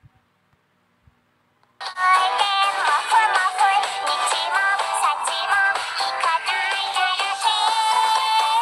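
Near silence with a few faint clicks, then background music with a sung melody starts suddenly about two seconds in and carries on.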